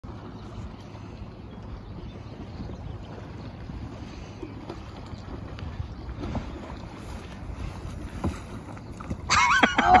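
Low, steady wind buffeting the microphone over open water, with a couple of faint knocks in the second half. A man laughs just before the end.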